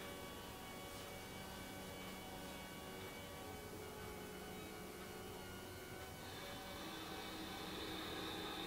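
Faint hum made of soft, held tones that shift every few seconds, with no speech.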